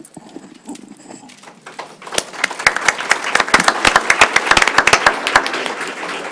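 Audience applause: a few scattered claps at first, building into full, steady clapping about two seconds in.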